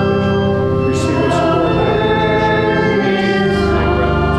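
A hymn sung by several voices with church organ accompaniment, held notes moving slowly from chord to chord; the organ bass moves to a lower note near the end.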